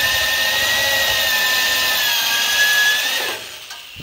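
Electric drill spinning a spot weld cutter into a factory spot weld in car-body sheet steel, cutting through the top panel to separate it from the one it is welded to. A steady whine under load that sags slightly in pitch midway, then winds down and stops a little after three seconds in.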